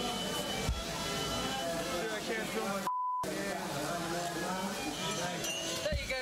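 Voices over background music, broken about three seconds in by a short single-tone TV censor bleep, with all other sound cut out under it, masking a spoken word.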